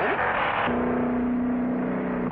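Car engine and road noise on an old film soundtrack during a drag race. About a third of the way in, the sound switches abruptly to a steady engine drone that holds at one pitch.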